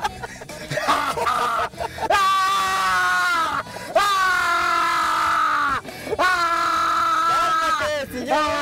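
A high-pitched voice wailing in four long, drawn-out cries, each falling in pitch at the end.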